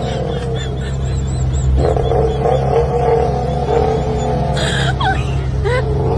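Sports coupe's engine and exhaust running steadily at low speed as it pulls away, with a constant low drone and a wavering higher note over it; voices are mixed in.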